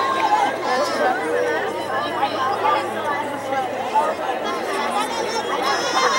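Crowd chatter: many voices talking at once, overlapping into a steady babble with no single speaker standing out.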